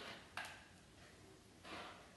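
Faint, soft scratching of a slicker brush's metal pins drawn through a poodle's thick, curly coat, with one short click about a third of a second in.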